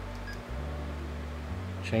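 Low steady hum with no other clear event, and a spoken word right at the end.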